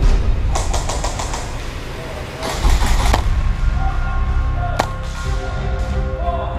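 Background music with a steady, heavy bass and long held notes. It is broken by a quick run of sharp clicks about half a second in, a short noisy burst about halfway through, and one more sharp click near the end.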